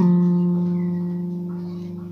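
A single guitar note held and left to ring, fading slowly. Its pitch drops briefly at the start as the player slides down to it.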